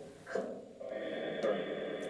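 PhasmaBox ghost-box app playing a steady, radio-like hiss with faint garbled fragments, starting about a second in.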